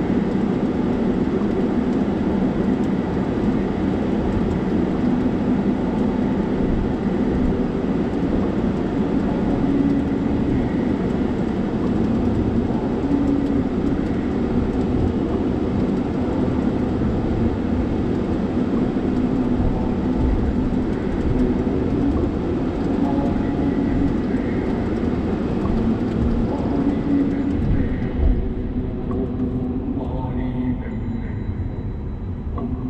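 Steady low road and engine rumble inside a Mercedes-Benz car's cabin as it drives slowly along a city street, with a single low thump near the end.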